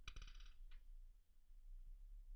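Near silence, broken at the start by a faint click with a brief high, metallic-sounding ringing right after it, and a second faint click just under a second in. The clicks fit a mouse click on the 'Open' button.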